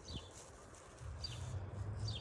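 A bird calling faintly, a short falling chirp repeated about once a second, with a low steady hum coming in about a second in.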